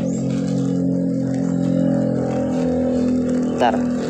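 A small engine or motor running steadily nearby, a constant low drone that holds one pitch throughout.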